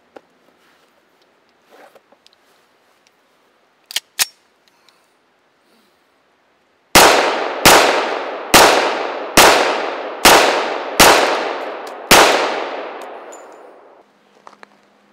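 Seven shots from a 1911 pistol, starting about seven seconds in and coming roughly one every second. Each report is followed by a long echoing decay, and the last one rings longest.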